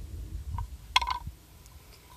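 A few light clicks and taps from handling a wooden brush holder and a makeup brush, the sharpest about a second in, over a low rumble of wind on the microphone.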